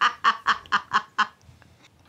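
A person laughing in a run of short pulses, about four a second, that fade away about a second and a half in.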